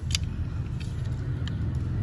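A low, steady rumble with a few light clicks of small plastic toy cars being handled, the sharpest just after the start.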